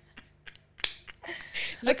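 A sharp hand click, like a finger snap, a little under a second in, with a couple of fainter clicks before it. Quiet breathy laughter follows, and a voice comes in near the end.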